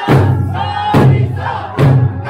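Traditional Okinawan eisa: a troupe of dancers strikes large barrel drums together three times, about once a second, with the dancers' loud chanted shouts between the beats.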